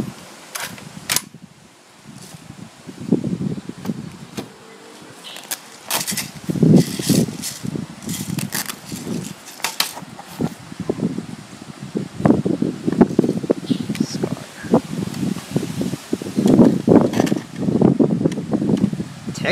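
Handling noise from an airsoft SCAR-H rifle and its padded soft gun case: scattered sharp plastic clicks and knocks, with fabric rustling and bumping that grows busier in the second half.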